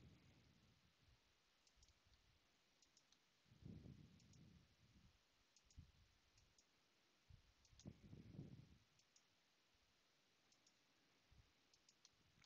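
Near silence with faint computer mouse clicks, often in quick pairs, about one a second. There is a soft low sound twice, about four and eight seconds in.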